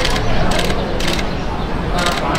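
Camera shutters clicking in short rapid bursts, about three in the first second and a half, over the chatter of a crowd.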